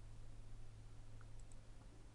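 Quiet room tone: a low steady electrical hum, with a few faint clicks in the second half.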